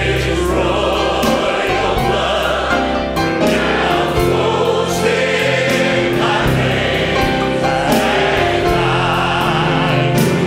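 Large church choir singing a gospel hymn over instrumental accompaniment, holding long sustained notes.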